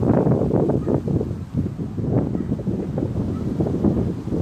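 Wind buffeting the microphone in irregular gusts: a low, rumbling rush that swells and dips.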